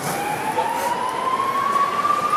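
A siren in the street: one long tone rising slowly and steadily in pitch, over a background of city street noise.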